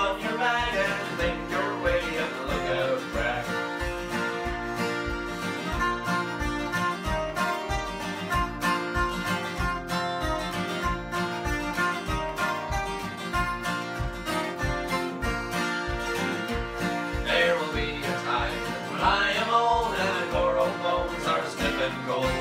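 Two acoustic guitars strummed together, playing an instrumental break in a country-folk tune, with a steady low beat about twice a second.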